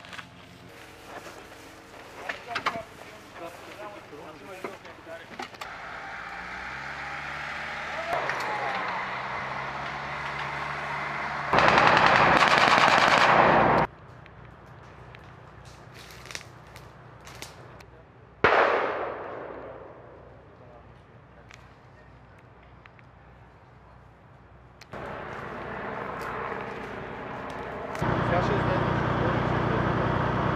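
Rifle and machine-gun fire: scattered shots at first, then a loud continuous stretch of about two seconds, a single sharp blast that dies away over a second or so, and more firing near the end.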